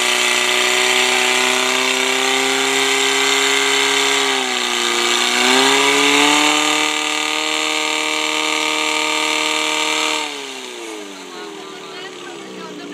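A portable fire-fighting pump's engine running hard at high revs, driving water through the hoses. The revs sag briefly about four and a half seconds in and pick up again, then fall away about ten seconds in.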